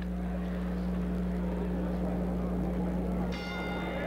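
Boxing ring bell struck once about three seconds in, ringing on to start the next round, over arena crowd noise and a steady low hum.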